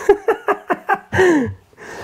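A man laughing breathlessly in quick short bursts, then a longer falling vocal sound about a second in.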